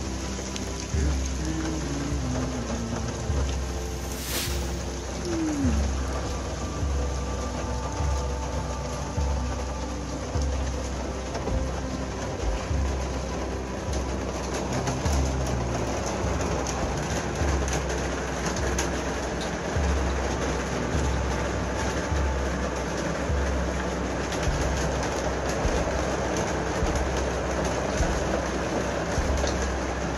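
Steady rain falling, with soft piano music playing over it.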